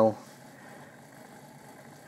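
Bachmann OO gauge Class 4575 Prairie tank model locomotive running slowly on a rolling road: a faint, steady hum of its motor and gears, very quiet and smooth.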